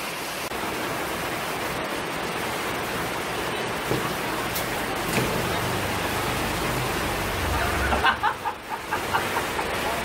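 Steady rain falling, an even hiss. About eight seconds in, a short, broken sound rises above it.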